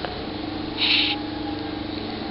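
Border collie giving one short, high whine about halfway through, over a steady low hum.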